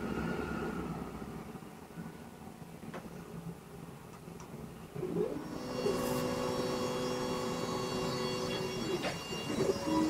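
WeCreat fume extractor fan running steadily beside a WeCreat Vision 20-watt diode laser engraver at work. From about five seconds in, the laser's moving head adds a whine made of several steady tones.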